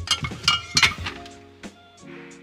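Spice jars and bottles clinking and knocking together as they are taken from a cupboard, with several quick knocks in the first second, over background music.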